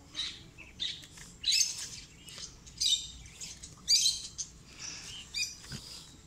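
Small birds chirping in short repeated phrases, about one every second, over faint background hiss.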